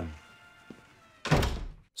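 A panelled wooden door pulled shut with a heavy thud about a second and a quarter in, over faint background music.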